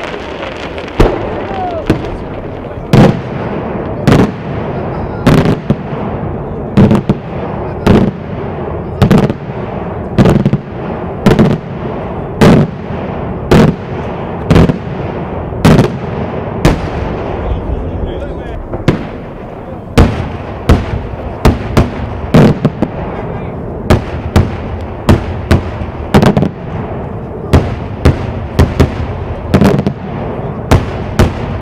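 Daytime fireworks: aerial shells bursting overhead in loud bangs, about one a second at first. The bangs come faster in the last third, two or three a second.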